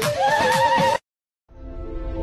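A pink plastic toy horn blown in a wavering, whinny-like tone over a dance-music beat, with a higher note rising in about a fifth of a second in. It cuts off abruptly about halfway through, and after a short silence soft, slow background music begins.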